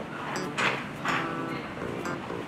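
Lively mix of sounds carried from around a baseball stadium: echoing, drawn-out voices and music, with two louder swells about half a second and a second in.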